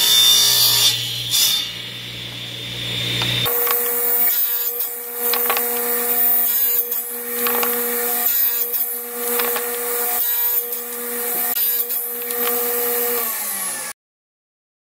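Table saw cutting segments from a maple board, with short bursts of cutting. A few seconds in, the sound changes abruptly to a steady motor hum with a cut about once a second. The hum falls away near the end as the blade spins down.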